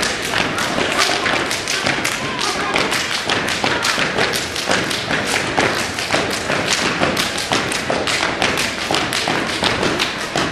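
A step team stepping on a gym floor: stomps and hand claps struck together in quick rhythm, several sharp thumps a second without a break.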